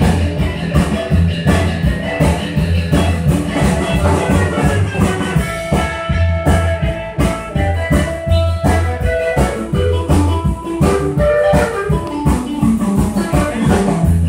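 Live band playing: an electric guitar plays a lead line over walking upright bass and a drum kit keeping a steady beat.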